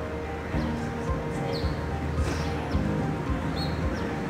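Outdoor city ambience: short high bird chirps about every half second over a steady low hum and faint music. Soft, evenly spaced low thumps of footsteps run through it.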